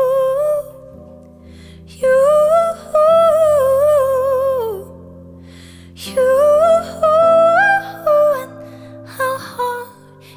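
A woman singing wordless, hummed phrases over held chords on a digital piano, in three phrases, the middle one sliding down in pitch at its end.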